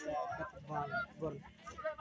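A boy's wordless vocal sounds, several short pitched bursts, as he complains of the heat.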